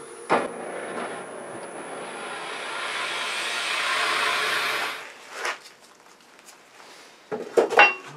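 Large drill bit boring into the end of a wooden blank spinning on a lathe at about 500 rpm: a cutting hiss that builds for about four seconds and stops about five seconds in. A few knocks follow near the end as the bit is backed out.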